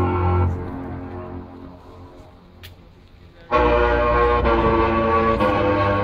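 Cruise ship's musical horn playing a tune: a loud held note cuts off about half a second in and its echo fades away, then a deeper note starts about three and a half seconds in and holds.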